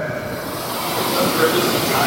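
Steady hiss of room background noise, with a faint, distant voice of an audience member asking a question away from the microphone.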